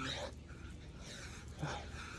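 A man breathing hard while doing push-ups, with a short grunt of effort right at the start and another about a second and a half later, one for each rep.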